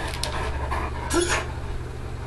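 Great Dane panting, with one short breathy whimper about a second in.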